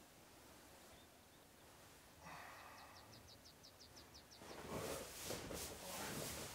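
Near-silent room, then a faint run of quick, even ticks, and rustling that grows louder near the end: people stirring in nylon sleeping bags.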